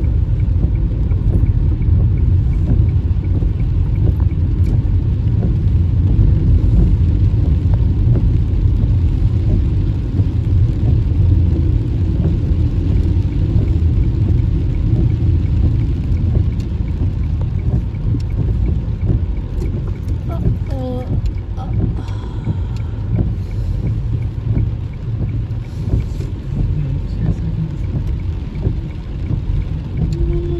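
Steady low rumble of a car driving on a wet road, heard from inside the cabin: engine and tyre noise.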